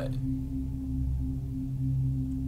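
Background music: a low, steady droning tone.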